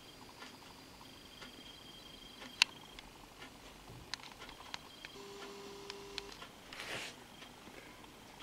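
Quiet room tone with faint scattered small clicks and one sharper click about two and a half seconds in, plus a brief faint hum about five seconds in.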